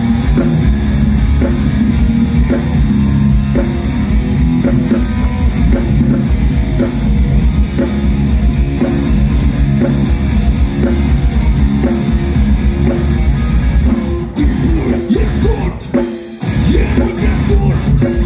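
Heavy metal band playing live through a PA: electric guitars, bass guitar and drum kit, loud and dense. Near the end the music drops away for about two seconds, then the full band comes back in.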